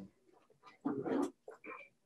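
Dry-erase marker writing on a whiteboard: a few scratchy strokes, then a brief high squeak near the end.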